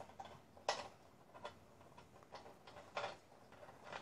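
Russian dwarf hamster eating and handling food inside a clear plastic tunnel: a few faint, irregular clicks.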